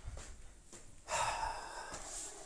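A person's voice calling out at a distance: one held call of just under a second, starting about a second in.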